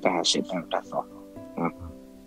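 A man speaking in short clipped phrases over a video call, trailing off about a second in. Faint steady sustained tones sit underneath.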